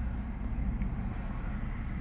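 V6 engine of a 2011 Chrysler Town & Country idling with a steady low rumble.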